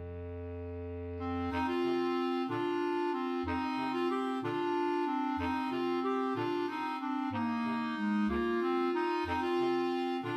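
Clarinet choir of three B-flat clarinets, alto clarinet and bass clarinet. A held low chord gives way, about a second and a half in, to a lilting 6/8 passage: the alto and bass clarinets mark short notes about once a second under a running clarinet line and a soft melody above.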